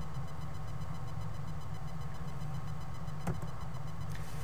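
Steady low electrical hum from the recording setup, with a single sharp click about three seconds in: a computer mouse click advancing the slide.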